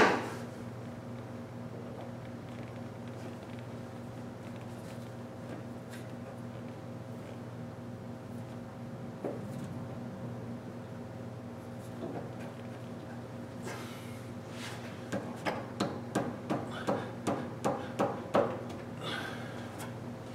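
Sharp metal knocks, about two a second for several seconds starting about three quarters of the way in, as a Powerbond harmonic balancer is worked onto the crankshaft snout: a snug fit. A single loud click comes right at the start, and a steady low hum runs underneath.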